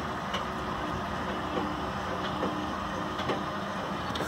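Travel trailer's electric stabilizer jack motor running steadily as the jack retracts. It stops right at the end.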